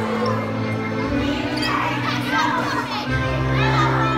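Music with held low notes that shift about a second in and again near three seconds, under many children's voices chattering and squealing as they dance.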